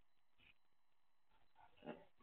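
Near silence: faint room tone, with one brief, faint sound near the end.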